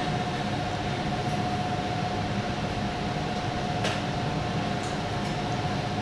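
Steady machine hum with a rush of air and a thin steady whine, unchanging throughout.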